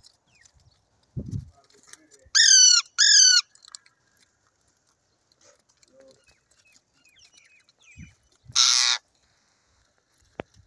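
Indian ringneck parakeets calling: two loud, harsh calls a little over two seconds in, each bending down in pitch. Soft chirps follow, then a loud rasping burst near the end.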